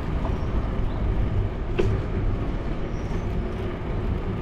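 Steady wind rumble on a bicycle-mounted action camera, with tyre and road noise from riding along the street, and a single click a little before the middle.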